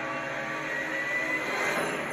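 A steady rushing noise from the movie trailer's soundtrack, with a thin high whistling tone coming in just under a second in.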